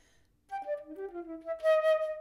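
Solo concert flute: after a faint breath noise and a short gap, a quick string of short notes at changing pitches starts about half a second in and settles into a held, breathy note that is the loudest part.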